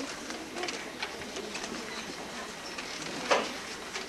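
Room noise of a gathered audience: a low murmur and rustle with scattered small clicks and knocks, and one sharper knock about three seconds in.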